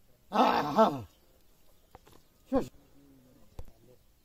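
An animal calling twice: a loud pitched call of under a second near the start, then a short falling call about two and a half seconds in.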